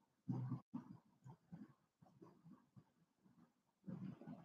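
Near silence: room tone, with a few faint brief sounds in the first second.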